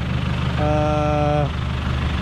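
Engine of a modified Toyota Hilux Vigo pickup idling steadily, with a steady held tone lasting about a second in the middle.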